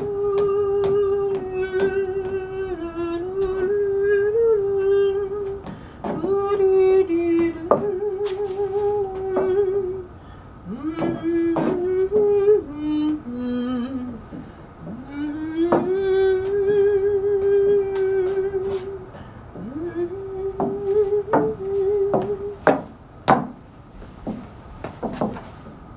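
A woman humming a slow tune in long held notes, with short breaks between phrases and sharp clicks scattered through.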